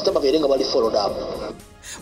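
A man speaking over background music; the speech breaks off about one and a half seconds in.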